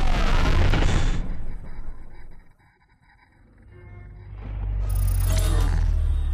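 Logo-sting music with sound effects: a loud whooshing swell over a deep rumble that dies away about two and a half seconds in, then a second deep booming swell that builds from about four seconds in.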